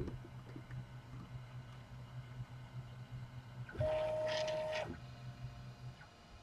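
Colido 3.0 3D printer's stepper motors running through its calibration routine: a low steady hum, then about four seconds in a higher-pitched whine lasting about a second as the printhead travels to its first calibration point. The hum stops shortly before the end.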